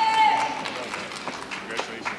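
A single high-pitched whoop from the audience, rising and falling over about half a second, followed by a few scattered sharp taps.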